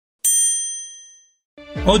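A single bright, bell-like ding that rings out and fades over about a second. Music and a man's voice come in near the end.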